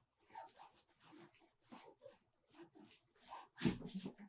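Faint scattered knocks and rustles of a person walking about a small room and handling a phone, louder in the last half second.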